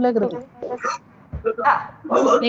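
A woman's voice lecturing, trailing off into a short pause before speaking again.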